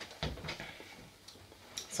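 A soft low knock about a quarter second in, then a few faint scattered clicks in a quiet small room.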